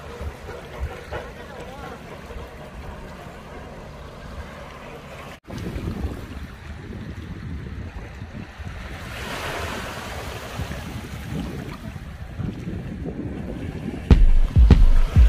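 Small waves lapping over a pebble shore, with wind buffeting the microphone. The sound breaks off for an instant about five seconds in, and a stronger wash of water comes near ten seconds.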